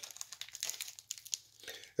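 Faint crinkling and crackling of a trading-card pack wrapper being handled and opened.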